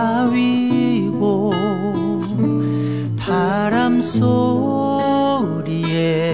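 A recorded song playing: acoustic guitar accompaniment under a melody line sung or played with a wide vibrato.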